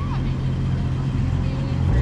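Pontiac Firebird's 350 V8 running with a steady, muffled, soft and smooth low rumble as the car rolls slowly away, the revs starting to rise near the end.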